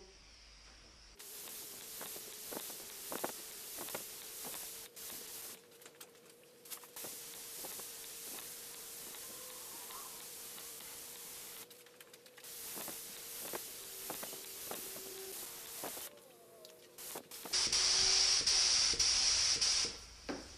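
Gravity-feed paint spray gun hissing as primer is sprayed in passes, with short breaks where the trigger is let go. The hiss is louder for the last two seconds or so.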